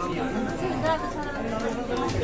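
Several people talking at once in the background: indistinct chatter of a small crowd.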